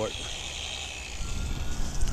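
Low, steady wind rumble on the microphone with faint outdoor background noise, after a spoken word ends at the start.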